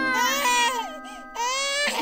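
Newborn baby crying: two long wails with a short break between them.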